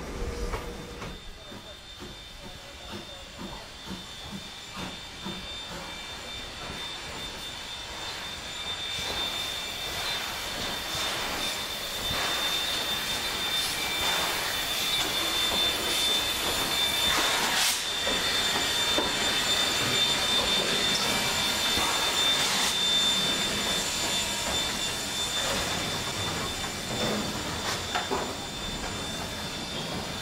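A mixed train of wooden carriages and wagons rolling past behind NZR Ab-class steam locomotive 608, with a steady high-pitched squeal and the hiss of steam as the locomotive works. The sound grows louder about halfway through.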